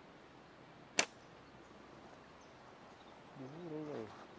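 OTT-style hunting slingshot fired once about a second in: a single sharp snap as the flat bands release an 8 mm steel ball. Near the end, a brief low voiced hum.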